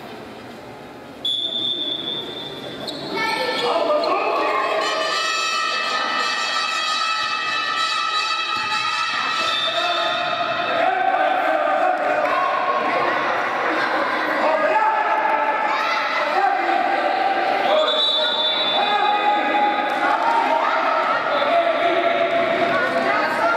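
A referee's whistle blows a long blast about a second in and again near the end, over a basketball bouncing on an indoor court. From about three seconds on, a loud background of held notes, changing pitch every second or so, fills the hall.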